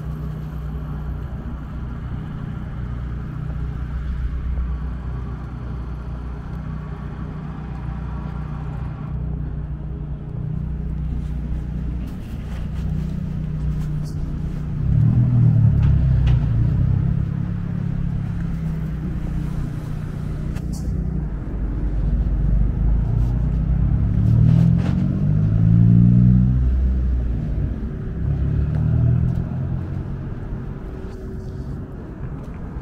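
City street traffic: cars and trucks passing and pulling away with a steady low engine rumble. Vehicles accelerate loudly around the middle and again a few seconds before the end, their engine note rising as they pull away.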